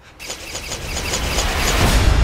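A horror-soundtrack riser: a swell of noise growing steadily louder, with a fast regular ticking on top, building toward the title-card hit.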